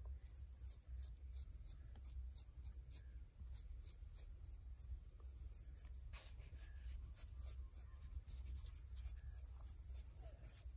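Straight razor scraping across the scalp, shaving off hair in repeated short, quick strokes.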